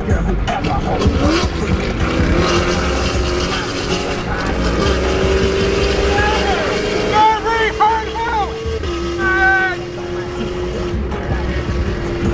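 Music with a steady beat and a singing voice playing inside a moving car, over steady road noise at highway speed.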